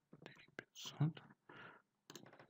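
A voice speaking quietly, almost a whisper, in short broken phrases.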